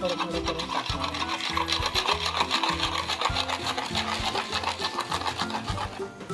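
Wire whisk beating cake batter in a bowl: a rapid, even run of clicks from the wires striking the bowl. The batter is chocolate cake premix being mixed into melted butter and milk.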